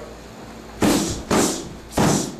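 Three kicks smacking into a handheld kick pad in quick succession, about half a second apart.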